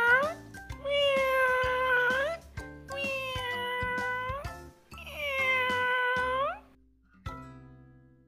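A cat meowing in long drawn-out calls: the tail of one just after the start, then three more, each held at a steady pitch and sliding upward at its end, over background music. A final note is struck a little past seven seconds in and rings out.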